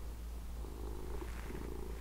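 A domestic cat purring: a low, steady rumble.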